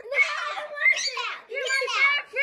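Young children's high, excited voices, calling out and laughing in play.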